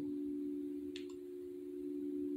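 A steady pure-tone drone of two close, unchanging pitches, like a sustained healing-frequency or singing-bowl tone track, with one faint click about a second in.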